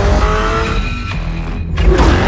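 Lamborghini Urus twin-turbo V8 accelerating, its pitch climbing and then dropping near the end, over a music soundtrack with a steady low bass.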